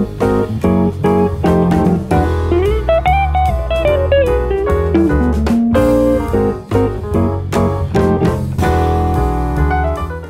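A jazz band's studio recording playing a tune's melody, with guitar and piano over walking bass notes and a drum kit.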